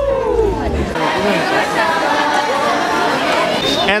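A women's folk choir's last held note slides down in pitch and dies away about a second in. Crowd chatter and overlapping voices follow.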